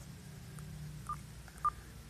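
Two short, faint beeps about a second in, half a second apart, over a low steady hum.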